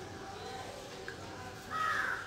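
A single loud bird call near the end, over a faint steady hum.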